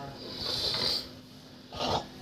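Indian spectacled cobra hissing with its hood spread: a breathy hiss about half a second long, then a second, shorter one near the end.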